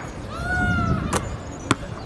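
A basketball shot striking the hoop: two sharp knocks about half a second apart, the second the louder. They follow a short, steady pitched tone about half a second long.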